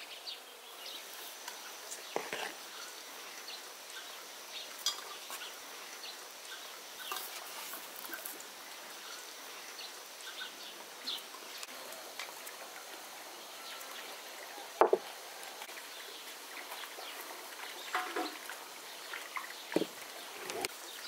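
Quiet rural outdoor ambience with faint bird calls, broken by scattered light clicks and knocks of bowls and kitchen things being handled on a table. The sharpest knock comes about fifteen seconds in.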